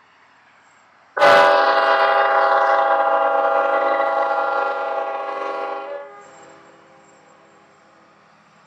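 Union Pacific diesel locomotive's multi-chime air horn sounding one long blast: it starts abruptly about a second in, holds a steady chord for about five seconds and dies away. A faint rumble from the approaching freight train lies under it.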